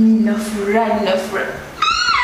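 A woman's voice in a drawn-out exclamation and quick speech, ending with a short, very high-pitched cry that rises and falls.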